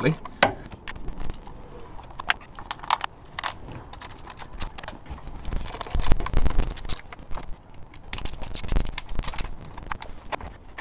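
Socket ratchet clicking in irregular runs, with light metallic clinks, as the loose 8 mm bolts holding the rocker cover of a Ford 2.0 Duratec engine are undone. A few dull knocks about six seconds in and near the end are the loudest sounds.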